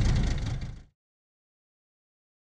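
Low rumble of a small boat under way, its outboard motor running with wind noise on the microphone, fading out within the first second into silence.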